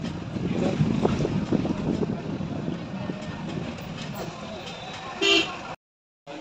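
Vehicle road noise while driving through a busy street, with one short vehicle horn toot about five seconds in. The sound cuts off abruptly just before the end.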